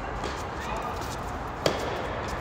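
A tennis racket striking the ball once, a single sharp pop a little after halfway through: a topspin forehand hit close to the microphone. A faint knock about a quarter-second in comes from the ball at the far end of the court.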